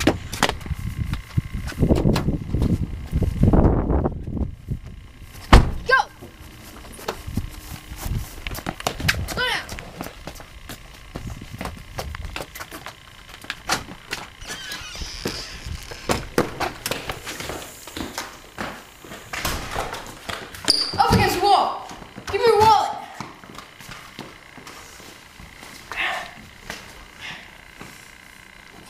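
Scuffling and handling noise with a sharp, loud thunk about five and a half seconds in, scattered small knocks and clicks, and short bursts of voices.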